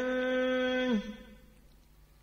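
A chanting voice reciting Vietnamese verse holds the last syllable of a line on one steady note for about a second, then stops, leaving a pause of near silence.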